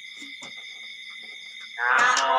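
A pause in a group's Buddhist prayer chanting, with a faint steady high-pitched whine and a soft knock about half a second in; the group's voices start chanting again just before the end.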